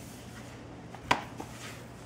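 Laptop lid shutting against its base with one sharp clack about a second in, then a lighter tap.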